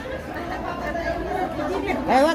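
Background chatter: several women talking at once, no single voice clear.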